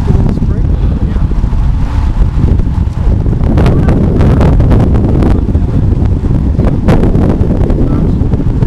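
Loud wind buffeting the microphone of a camera riding along with a group of road bikes at speed, a steady rumbling roar. A few sharp clicks or rattles break through in the middle and near the end.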